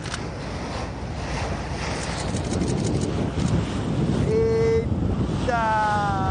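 Boat at sea with wind and water noise that grows louder. About four seconds in a short steady voice-like sound is heard, and near the end a longer, slightly falling vocal cry.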